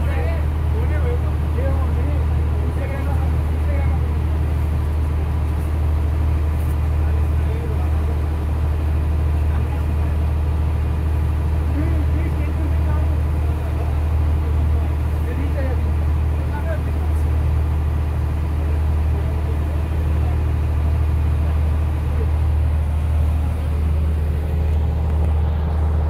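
Boat engine running steadily, a loud low drone that holds an even level throughout, with faint voices underneath.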